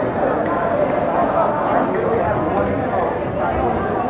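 Chatter of many people in a gymnasium, with thuds of footwork on the wooden floor during a foil fencing bout. Near the end there is a thump and a thin high tone comes on.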